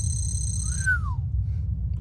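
Sci-fi computer interface sound effect of a map display coming up on a voice command. A steady high electronic tone cuts off under a second in, with a short chirp rising and falling just as it ends, over a constant low hum.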